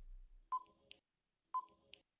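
Countdown timer sound effect: a short electronic tick with a brief ringing note, about once a second, twice here, each followed by a fainter click.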